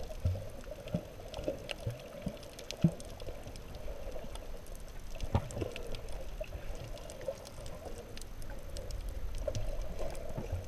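Muffled underwater water noise heard through a submerged camera, with scattered faint clicks and bubbling and a few low thumps, the sharpest about three and five seconds in.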